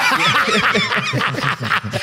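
Several men laughing together in quick, choppy bursts.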